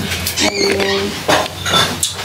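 A woman's drawn-out "um", with a few light knocks of a small ceramic canister and its wooden lid being handled and set down on a bathroom countertop.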